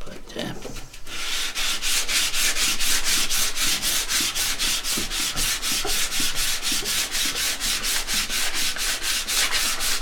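Sandpaper on a hand-held block rubbed rapidly back and forth along a thin wooden strip, with a steady rhythm of about five strokes a second that starts about a second in.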